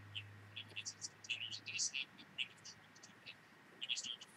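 Faint, broken high-pitched fragments of a man's speech that sound like whispering, with the body of the voice missing: the audio of a degraded video-call connection. A low hum underneath fades out a little before halfway.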